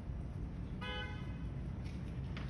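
A single short horn toot, one steady pitched tone lasting about a third of a second, sounds about a second in over a low steady background hum.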